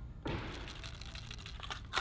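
Megabass Griffon Zero crankbait shaken in its plastic blister pack: its tight rattle ticks rapidly, mixed with the crinkle of the packaging.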